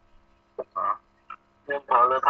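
A man's voice in a quiet room over a faint steady hum: a short drawn-out vocal sound, like a hesitation, about half a second in, then speech starting near the end.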